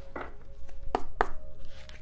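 A few sharp taps and clicks of tarot or oracle cards being handled and knocked against a tabletop, three of them standing out, about a second apart.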